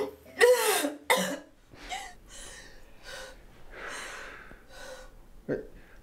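A young woman's short voiced sounds and a cough in the first second or so, then soft breathing and faint rustles.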